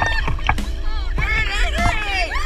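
Several people shouting and whooping together as they splash through shallow sea water, over a heavy low rumble of water and wind on a handheld action camera's microphone.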